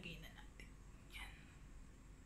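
Near silence, with a few faint, brief whispered or breathy sounds from a woman.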